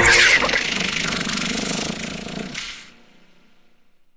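A sudden loud hit with a quick falling sweep, followed by a rough, noisy rumble that fades out about three seconds in: a produced closing sound effect or the final hit of the end music.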